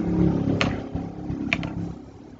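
Two short computer mouse clicks, about half a second and a second and a half in, over a steady low hum from the recording setup.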